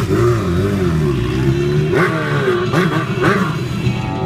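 Honda CB1000R inline-four engine being revved repeatedly, its pitch rising and falling, with sharp blips of the throttle about two and three seconds in.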